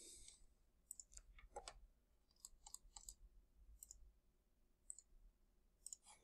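Near silence with faint, scattered clicks, about a dozen over the stretch, from a computer mouse.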